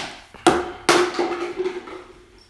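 Three sharp knocks in the first second as a small plastic container is banged over a mixing bowl to empty it.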